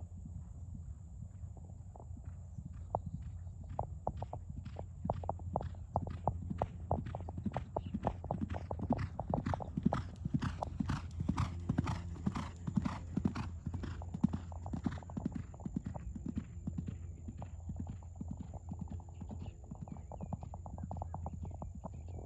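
Hoofbeats of a racehorse galloping on a dirt training track, growing louder as it comes by, loudest around the middle, then fading as it gallops away.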